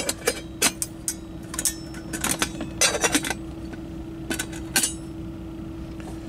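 A stainless steel camping cook pot and its latched lid clinking as they are handled, a scattered series of short, sharp metal clinks over a steady low hum.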